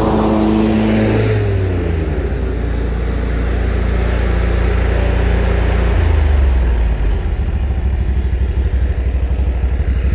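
Exmark stand-on mower's engine running close by. Its pitch drops about a second and a half in, and it then runs lower and steadier as the mower moves off.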